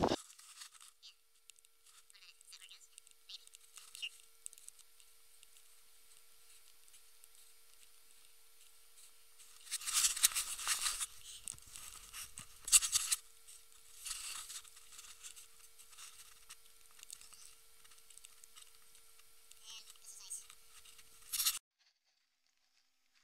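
Footsteps crunching through snow and ice in a few loud bursts about ten to fourteen seconds in, over otherwise faint crackle and a faint steady tone; the sound cuts off suddenly near the end.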